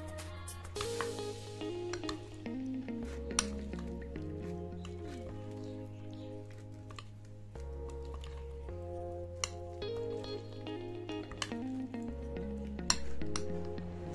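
Background music with a steady beat, over a metal spoon clinking now and then against a bowl as it stirs vegetables and paneer into a thick marinade, with soft squelching of the mix.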